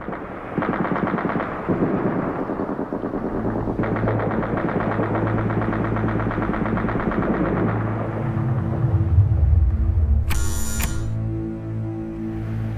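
Rapid automatic gunfire, a dense rattle of shots for most of the first eight seconds, over a low steady drone. About ten seconds in, an electric doorbell buzzes once, briefly.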